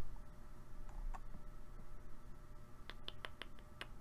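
Clicking at a computer: a couple of faint clicks about a second in, then a run of about six quick, sharp clicks near the end, over a faint steady hum.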